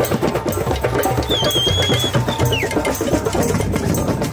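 West African drum ensemble of djembes and dundun bass drums playing a fast, dense rhythm. A high whistle-like tone sounds for under a second, about a second in.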